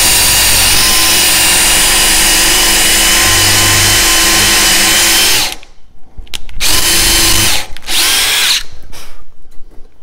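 DeWalt DCD777 20-volt brushless compact drill/driver drilling a hole partway into soft pine: a steady, even-pitched motor whine that stops abruptly about five and a half seconds in, then two short bursts, the second dropping in pitch as it winds down.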